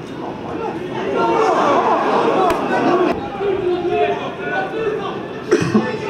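Many overlapping voices calling and shouting at a football match, with a couple of sharp knocks and a louder thud near the end.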